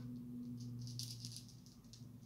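Faint, light rattling of small hard objects being handled, a quick cluster of clicks in the first second and a half, over a steady low hum.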